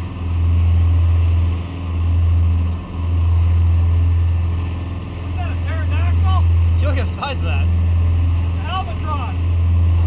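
Low, loud drone of a sportfishing boat under way at trolling speed, its engines and wake mixed with wind on the microphone, swelling and easing every couple of seconds. About halfway through, several short high-pitched warbling calls sound over it.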